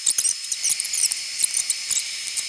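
A cardboard box and its plastic packing being opened by hand: an irregular run of sharp high crackles and squeaks, over a faint steady high whine.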